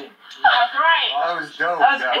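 Speech: people's voices talking, starting about half a second in after a brief lull.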